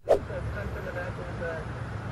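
Steady low rumble of several vehicles driving slowly in close convoy on a city street, with faint distant voices underneath.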